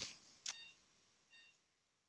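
Near silence, with a faint click about half a second in and two faint short electronic beeps about a second apart.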